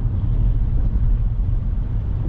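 Steady low rumble of a car driving slowly on a wet road, heard inside the cabin: engine and tyre noise with no sudden events.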